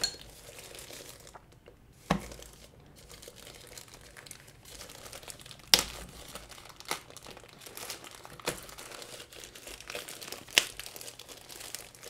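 Soft white protective wrapping crinkling and rustling as it is peeled off a small plastic security camera. Sharp crackles break through now and then, the loudest about halfway through.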